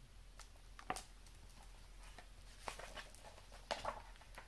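Pages of a picture book being turned and the book handled: a few soft paper rustles and taps, the sharpest about a second in and a small cluster near the end.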